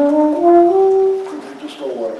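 Alto saxophone playing a short phrase of held notes that steps down and then climbs in steps, stopping about a second and a half in. It is played as a demonstration of the kind of player who is hard to get to let go.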